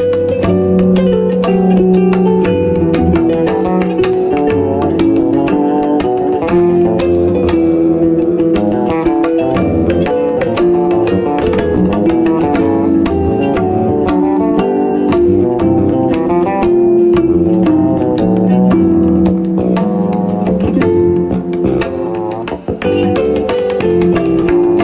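Live instrumental trio music: pedal harp and fretless electric bass playing plucked lines over hand percussion, with a steady stream of percussive strokes.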